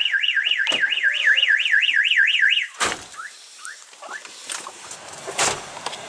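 An electronic car-alarm-type siren wailing up and down about four times a second, cutting off suddenly a little under three seconds in. A sharp knock follows, then a few short rising chirps and clicks.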